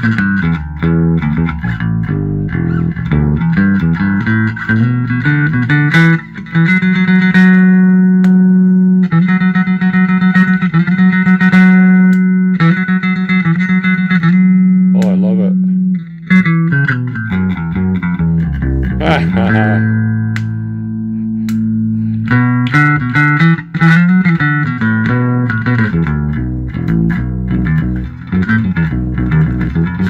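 1980 B.C. Rich Mockingbird electric bass played through an amplifier: plucked notes and runs, with one note held for about nine seconds through the middle. Sliding notes come near the middle of the passage, before quicker playing resumes.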